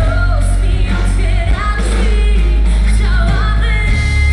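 Live amplified pop song: a voice singing a melody over a loud, heavy bass backing.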